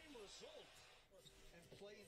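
Faint basketball game broadcast audio at low volume: a commentator's voice, heard in two short phrases, barely above near silence.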